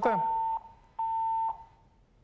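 Telephone busy tone on the call-in phone line: two half-second beeps with a half-second gap, the sign that the caller's line has disconnected.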